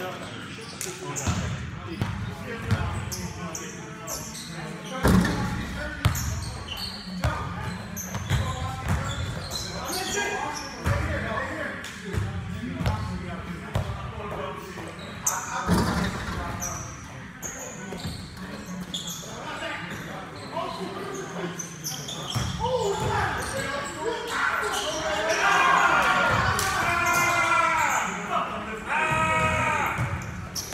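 Basketball being bounced and played on a hardwood-style gym court, with sharp repeated thuds echoing in a large hall. Players' voices call out over the play, louder in the last several seconds.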